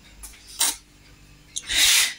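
Wooden kitchen drawer being pulled open: a short scrape a little past halfway, then a longer, louder slide near the end.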